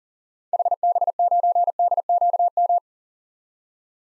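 Morse code practice tone sending the call sign HB9DQM at 40 words per minute: a fast string of single-pitch beeps, starting about half a second in and lasting a little over two seconds.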